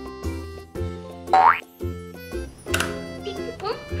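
Upbeat children's background music with a steady beat, overlaid with cartoon sound effects: a quick rising swoop about a second and a half in and another upward sweep near three seconds.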